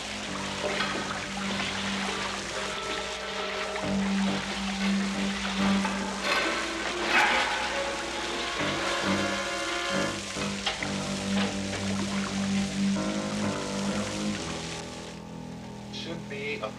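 Background film score with held low notes, over a wash of water sloshing.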